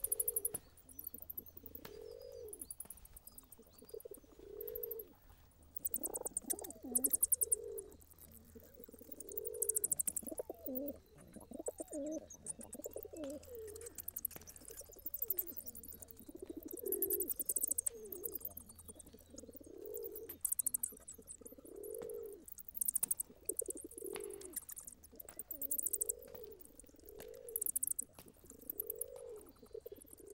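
Pigeons cooing, a soft rounded call repeating every second or two.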